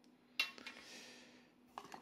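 Hard plastic objects put down on a glass tabletop: one sharp clack, a short scraping rustle that fades, then a few small clicks near the end.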